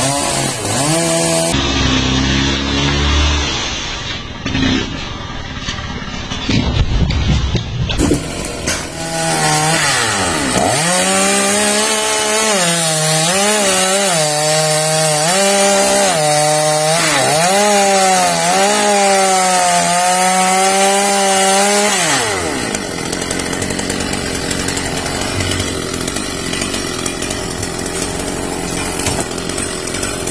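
Gasoline chainsaw running and cutting down into a large tree stump. The engine note dips and rises repeatedly as the cut loads it, then turns noisier without a clear pitch for the last part.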